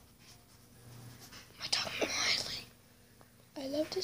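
A girl whispering for about a second, a breathy sound with no voice in it; she begins speaking aloud near the end.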